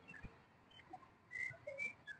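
Quiet background with a few faint, brief high chirps, most of them about halfway through and near the end.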